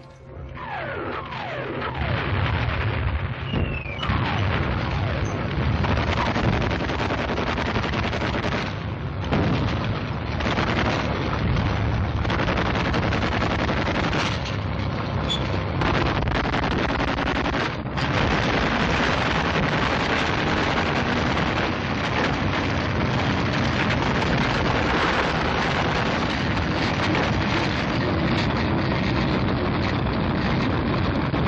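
Loud, constant rumble and clatter of a First World War tank moving forward, heard on an old film soundtrack. A few falling whistles sound in the first seconds as the noise builds up.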